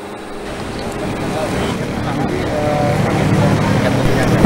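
Roadside background noise of traffic and indistinct voices, growing steadily louder.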